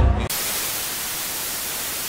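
Television static: a steady, even hiss of white noise that cuts in abruptly about a quarter second in, replacing the voices.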